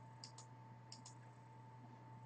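Near silence with two pairs of faint, sharp clicks from a computer's mouse buttons or keys, about a quarter of a second and one second in.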